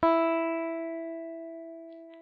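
A single clean electric guitar note, plucked once and left to ring, fading smoothly and evenly. It is recorded on an Aria MA series guitar fitted with a thin pot metal tremolo block, as a sustain test set against a thick Wilkinson block.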